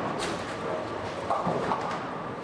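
A bowling ball rolling down the lane in a busy bowling centre, amid the clatter of the hall. There is a sharp click just after the start and a short voice-like sound about 1.3 s in.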